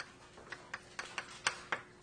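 Writing on a lecture board: a run of about eight sharp, irregularly spaced taps as letters of sequences are put up.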